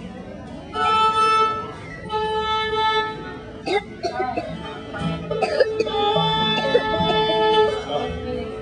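Fiddle bowing a few long held notes with pauses between, alongside plucked strings, with voices talking on stage.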